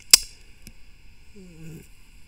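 A single sharp click just after the start, a fainter click a little later, then a short hummed "um" from a man's voice near the end.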